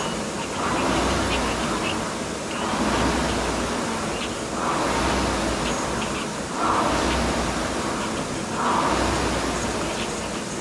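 Concept2 air rower's fan flywheel whooshing with each drive stroke, a surge about every two seconds, five strokes in all.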